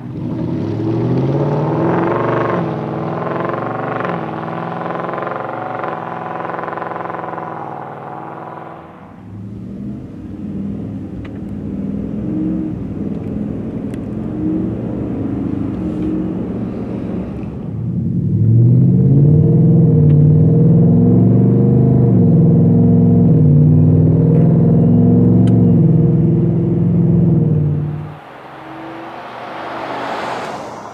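2021 Ford F-150 pickup's engine through a Flowmaster Outlaw cat-back exhaust, accelerating hard away with its pitch climbing in steps through the gear changes. Then the truck on its stock exhaust, quieter, heard from inside the cab. Then about ten seconds of the loudest accelerating run, and near the end the stock-exhaust truck driving past.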